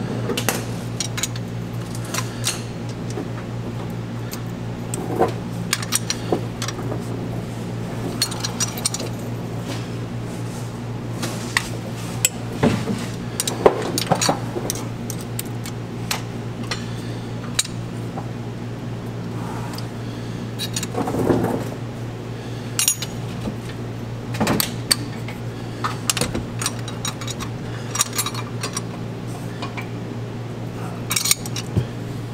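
Hand tools clinking and clicking against the rocker gear of a Paccar MX-13 diesel engine during a valve adjustment, in irregular metallic taps over a steady low hum.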